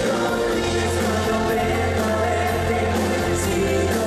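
A live dance band plays amplified through PA speakers, with singing over sustained chords and a steady bass.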